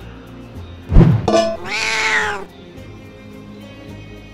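A sudden thump about a second in, then a loud, raspy animal screech lasting about a second that bends down in pitch at the end, heard over background music.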